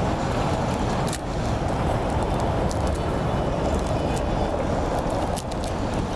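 Steady road traffic noise: a continuous rumble of passing cars, with a few faint clicks on top.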